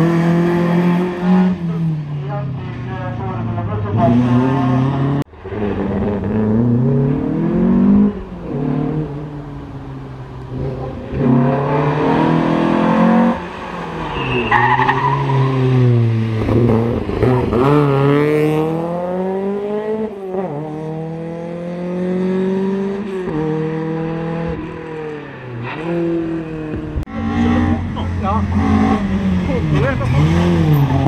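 Volvo 240 rally cars' engines revving hard, pitch climbing and dropping again and again through gear changes and lifts, as the cars pass one after another, with some tyre squeal as they slide through the corners.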